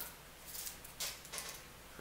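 Faint handling noise: a few light clicks and rustles from hands fiddling with a small object.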